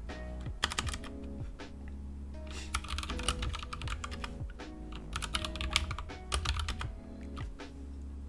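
Computer keyboard typing: several quick bursts of keystrokes as shell commands are entered.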